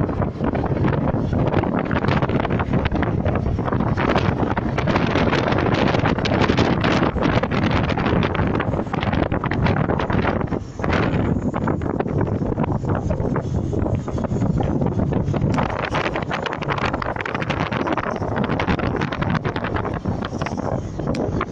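Wind buffeting the microphone of a phone filming from a moving vehicle, over the steady rumble of the road and engine, briefly easing about halfway through.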